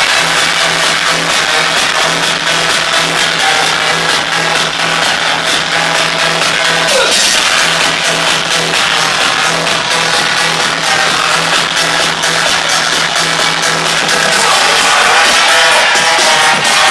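Loud electronic dance music from a DJ set, played over a nightclub sound system.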